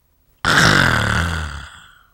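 A man's long, breathy groan of 'ah', starting suddenly about half a second in, falling in pitch and fading over more than a second: a drawn-out sound of despair.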